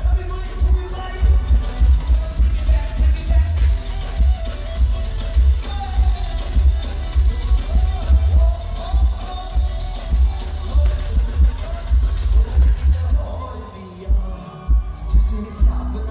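Live Punjabi pop band music played loud through a concert PA, with a heavy, pulsing bass beat under a melody. About two seconds before the end the bass drops out for a moment, then comes back in.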